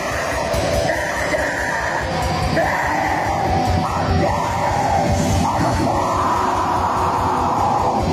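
Black metal band playing live: harsh screamed vocals held over distorted guitars and fast, dense drumming.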